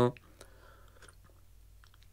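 A man sipping water from a glass: faint mouth and sipping sounds with a few small clicks, after the last spoken word trails off.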